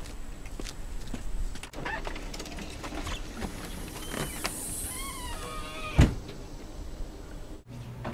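Footsteps up to a house door, then a storm door pulled open with its hinges giving a run of short wavering squeaks, and one sharp bang about six seconds in as a door shuts.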